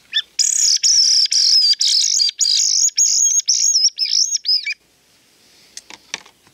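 Wooden wounded-bird predator call (HB Calls reference 91, long-range), sounded by sucking air through it while rasping the throat: a rapid run of high-pitched, wavering squeals imitating a bird in distress, a fox lure. The squealing stops about three-quarters of the way through.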